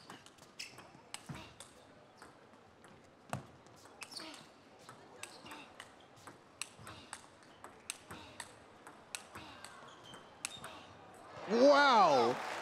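A long table tennis rally: the ball clicks off the bats and the table in quick, irregular taps, point after point of a blocking and counter-looping exchange. Near the end a loud voice cries out as the point finishes.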